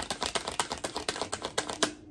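A deck of tarot cards being shuffled by hand, the cards flicking against each other in a rapid, even run of small clicks.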